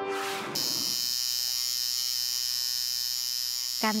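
A brief whoosh ends the music, then about half a second in a tattoo machine starts a steady electric buzz that runs on under the first words of narration.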